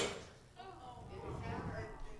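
The tail of a glass bowl in a paper bag shattering under a hammer blow, dying away within the first half-second. Then faint voices murmuring.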